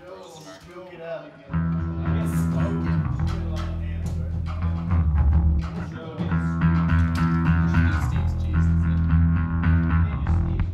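Blues-rock band with electric guitar and bass guitar coming in loudly about a second and a half in and holding sustained chords, after a quieter moment with a voice.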